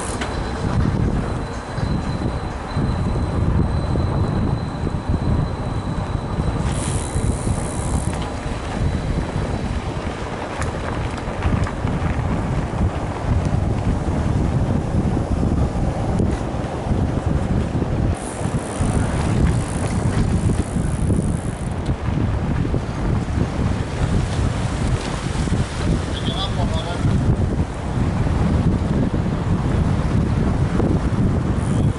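Wind buffeting the microphone of a camera on a moving mountain bike, a steady low rushing with the rolling noise of the tyres on paved and dirt paths.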